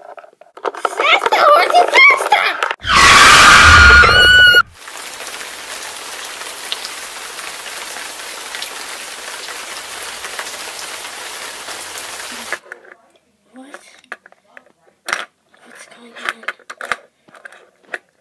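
Brief voices, then a loud screech over a low rumble lasting nearly two seconds, the sound of the toy car's crash. A steady rain-like hiss follows for about eight seconds, then a few light clicks of toys being handled.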